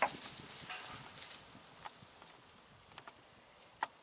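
Footsteps rustling through straw bedding, dying away after the first second or so, with one sharp click near the end.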